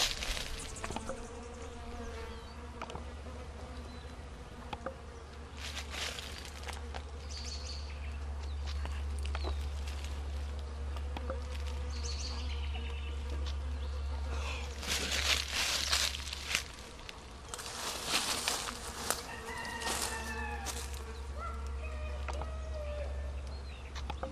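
Bees and flies buzzing steadily as they forage at manzanita flowers, with a few brief louder bursts of noise about 15 and 18 seconds in.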